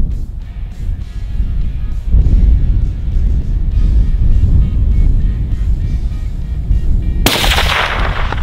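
A single rifle shot about seven seconds in, sudden and loud, with a ringing tail that fades over about a second. It is a follow-up shot at a wounded wild boar. A low, steady rumble runs underneath before the shot.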